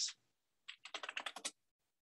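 Typing on a computer keyboard: a quick run of about ten keystrokes in under a second, then it stops.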